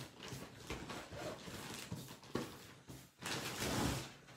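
Felt-tip marker strokes scratching across paper as lines are drawn, faint, with a longer and louder stroke near the end.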